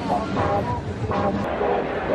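Crowd hubbub in a large convention hall: many overlapping voices talking over a steady low rumble.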